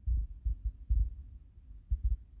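Low, dull thumps and rumble of a hand-held phone being handled against its microphone, several at irregular spacing.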